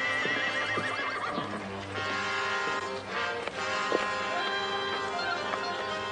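A horse neighs near the start, one wavering call that falls in pitch over about a second and a half, with a few hoof knocks, over orchestral background music that runs on.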